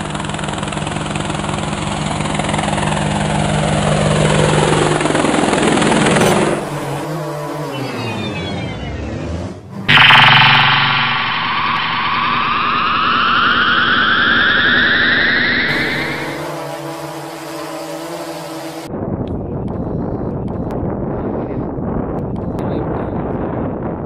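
Sound-designed drone effects: a steady motor hum with falling sweeps, then a sudden loud hit about ten seconds in followed by a long rising whine like propellers spinning up. Near the end this gives way to outdoor wind noise on the microphone.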